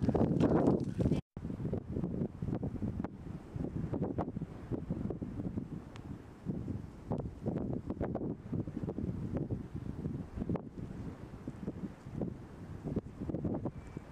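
Gusty wind blowing on the microphone, rising and falling unevenly. The sound cuts out for a moment about a second in.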